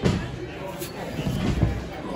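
Two dull thuds on a wrestling ring's canvas floor, one at the start and one about one and a half seconds in, over low crowd chatter in a hall.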